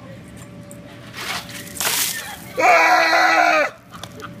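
A bucket of ice water poured over a man, a splashing rush about a second in, followed by a loud, held scream of about a second.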